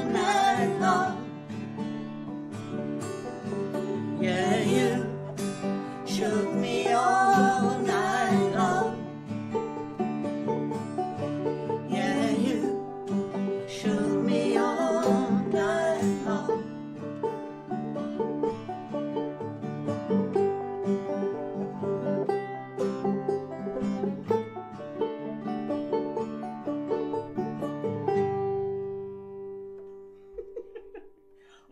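Banjo and acoustic guitar playing an upbeat country-style arrangement, with voices singing through roughly the first half. The song winds down near the end to a final held chord that fades.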